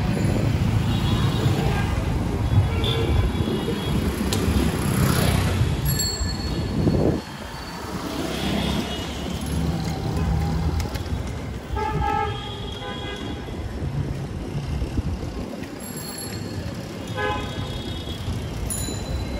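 Busy street traffic rumbling, with short vehicle horn honks: a few at the start, again about two-thirds of the way through, and near the end.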